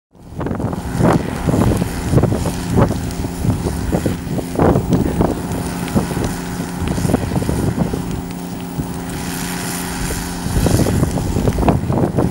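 A vehicle engine runs steadily under wind buffeting the microphone, with irregular sharp pops and knocks throughout.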